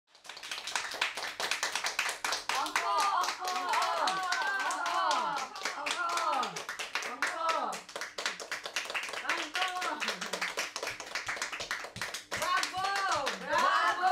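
Quick, sharp claps and taps in close succession, with a voice calling in short rising-and-falling sing-song phrases.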